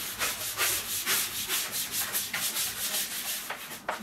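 Stiff-bristled scrubbing brush worked back and forth over a stainless steel sink to scrub off limescale deposits, with rapid rasping strokes about two to three a second.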